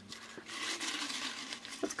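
Folded paper slips rustling as a hand rummages through them inside a glass jar, starting about half a second in.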